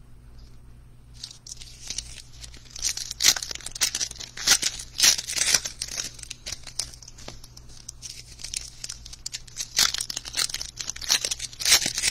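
Foil trading-card pack wrappers being torn open and crinkled by hand: a dense run of irregular rips and crackles starting about a second in.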